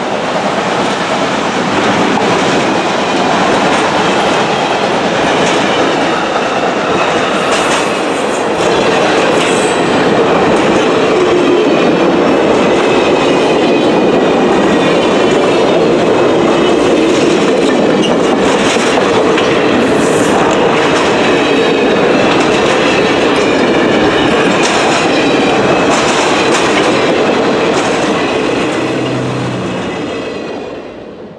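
Reading & Northern passenger coaches rolling past at speed: a steady loud rumble with repeated sharp clicks of the wheels over rail joints and the crossing. The sound fades out near the end.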